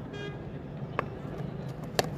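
Open-air ground ambience with a brief high horn-like toot near the start, a faint tap about a second in, and a sharp knock at the end as the bat strikes the tennis ball.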